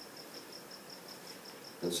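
A cricket chirping faintly, high-pitched short chirps in a steady rhythm of about four a second. A man's voice comes in near the end.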